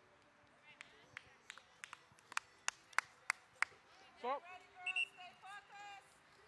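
Hand claps from the sideline: a few scattered claps, then about five sharp, evenly spaced claps around the middle. A voice calls out in the last two seconds.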